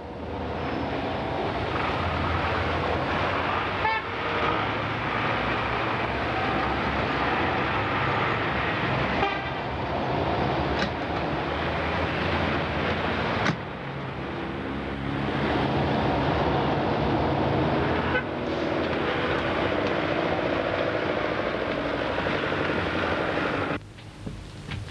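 City street traffic: running car engines with car horns tooting now and then.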